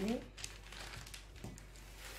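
Paper pattern being folded by hand, with soft crinkling and rustling.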